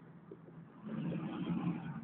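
Street traffic: a motor vehicle's engine hum and road noise, quiet at first, then louder from about a second in as a pickup truck comes close.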